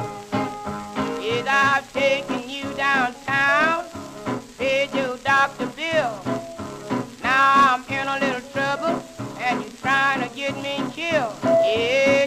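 Instrumental break of an old blues record: a steady rhythm under lead lines with notes that bend in pitch. It plays from a disc on a Garrard turntable, with record surface crackle underneath.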